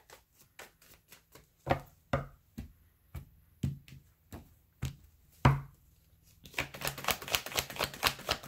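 A tarot deck being shuffled by hand: scattered single taps and flicks of the cards for about six seconds, then a quick, continuous clatter of shuffling near the end.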